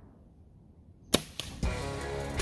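A bow being shot at a deer: one sharp, loud crack about a second in, then a second, smaller smack about a quarter second later. Music with drum beats comes in right after.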